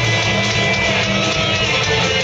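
Punk rock band playing live through a festival PA: electric guitars, bass and drums, loud and steady, heard from within the crowd.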